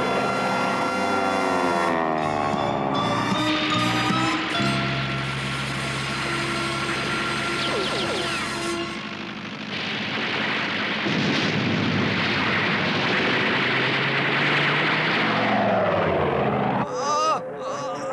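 Cartoon sound effects of First World War warplanes: engine drones with falling pitch glides for the first few seconds, then a long stretch of dense machine-gun fire from about ten seconds in until near the end, with music mixed in.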